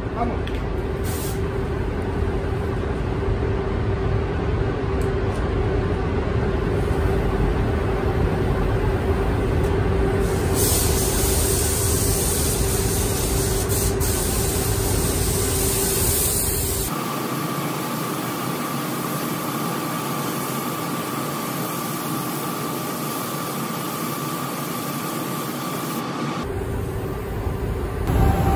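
Steady rushing air of a paint spray booth with a low hum, and the hiss of an Iwata LPH 400 HVLP spray gun spraying clear coat, sharpest from about ten to seventeen seconds in. Near the seventeen-second mark the sound changes abruptly to a thinner, steady rush with a faint higher whine.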